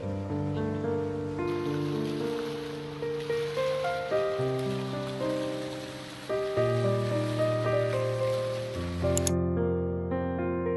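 Background music of slow, sustained keyboard chords. A steady hiss lies over most of it and cuts off suddenly near the end.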